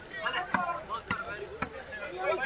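Sharp slaps of a volleyball being struck by hand during a rally, three hits about half a second apart, with men shouting over them.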